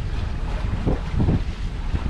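Wind buffeting the microphone in irregular gusts, over water washing along the hull of a sailboat under sail with its engine off.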